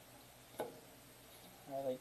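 Baseball trading cards being flipped through by hand, quietly, with one sharp card click about half a second in.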